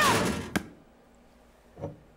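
A short scuffle: a woman's brief cry over a rush of noise as she is pushed against a kitchen counter, ending in one sharp knock about half a second in. After that it is nearly quiet, with a soft thump near the end.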